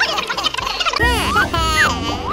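Cartoon sound effects: a short clatter of knocks at the start, then from about a second in a warbling, gobbling voice-like effect made of quick rising and falling pitch swoops.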